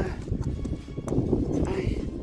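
Wind rumbling on the microphone, with a couple of light knocks and a faint snatch of voice.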